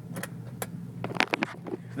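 Steady low hum of a truck being driven, heard inside the cab, with several sharp clicks and taps, bunched together a little past the middle.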